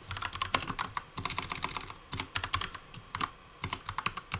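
Typing on a computer keyboard: a run of quick, irregular key clicks, with a brief pause about three seconds in.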